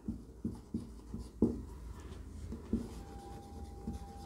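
Pen writing on a board or page: quiet scratching strokes and soft taps, with a faint steady tone coming in near the end.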